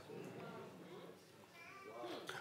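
Near silence, with faint, distant voices from the room.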